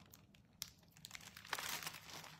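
A hardcover picture book being opened: a faint tick, then a short rustle of the cover and pages near the end.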